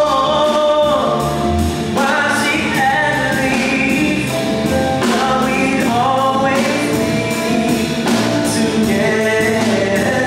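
Live band music: sung vocals with long held, wavering notes over electric guitar and keyboard accompaniment.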